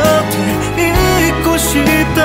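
Korean pop ballad music playing, in a stretch with no sung lyrics.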